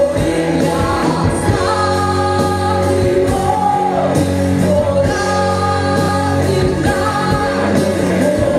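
Live worship song: a woman singing into a microphone over a band with electric bass guitar, the melody moving continuously over sustained accompaniment.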